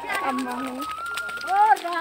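Voices of several people calling out and exclaiming, with no clear words: a short low held sound, a higher drawn-out call, then a rising-and-falling shout near the end.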